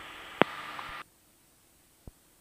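Aircraft radio/intercom hiss between transmissions, with a sharp click about half a second in. The hiss cuts off suddenly about a second in, leaving dead silence.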